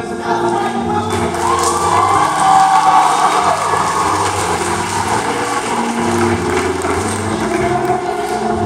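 High school men's chorus singing in harmony, holding long chords over a steady low bass line.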